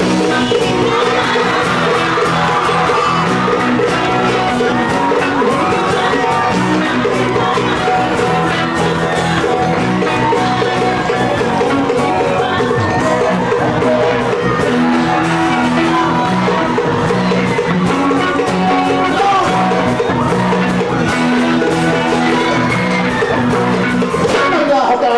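Live Pacific Island pop band playing, with electric guitar and singing, over a crowd that shouts and whoops along.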